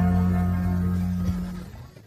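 The closing held chord of a devotional song's instrumental accompaniment, dying away and fading to near silence near the end.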